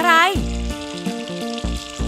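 Cartoon sound effect of paint pouring into a cup, a steady hiss-like stream, over background music with a bass beat.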